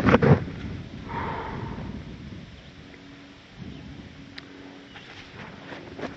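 A winded hiker breathing hard during a rest stop, loudest at the start, with a faint steady low hum in the later seconds.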